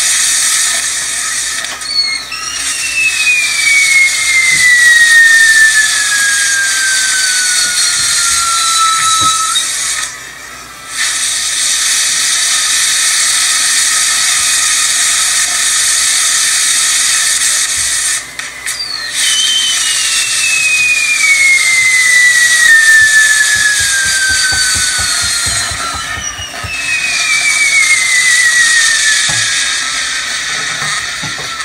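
Castillo fireworks burning: a loud, steady hiss of spraying sparks, with three long whistles that each slide slowly down in pitch over several seconds, the first about two seconds in and the others past the middle and near the end.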